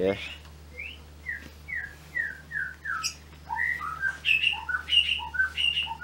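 White-rumped shama calling: a run of about six short, evenly spaced falling notes, then a quicker string of varied chirps and whistles.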